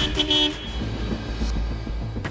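A car horn gives one short toot about half a second long, then a low steady hum.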